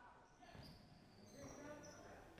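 Near silence: faint background of a sports hall during a basketball game.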